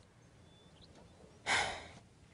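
Near silence, then a person sighs once, a short breathy exhale about one and a half seconds in.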